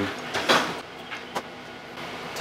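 A hex key working in an adjusting screw of a metal laser mirror mount, with small metal handling sounds: a brief scrape about half a second in and a single sharp click a little past the middle.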